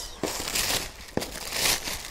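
Tissue paper rustling and crinkling as it is unwrapped by hand from around a pair of sandals in a shoebox, with one short knock just after a second in.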